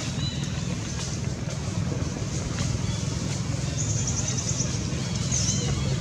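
Steady low outdoor background rumble, with a few faint short high chirps and a brief rapid high trill about four seconds in.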